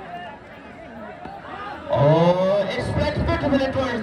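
Crowd murmur, then about two seconds in a man's voice breaks out loud and excited, with rising and falling pitch, as the ball is played into the outfield.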